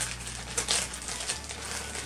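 Clear plastic bag crinkling and rustling as it is handled, with a few short crackles.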